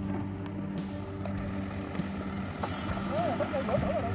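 An engine running steadily with an even, low hum. A voice is heard briefly near the end.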